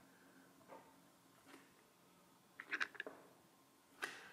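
Near silence, with a few faint short clicks and squishes of a caulking gun laying a bead of caulk along a board joint, clustered a little before three seconds in.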